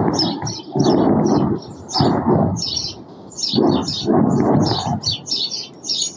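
Small birds chirping over and over, together with five or six rough, rumbling bursts of low noise, each under a second long, which are louder than the birds.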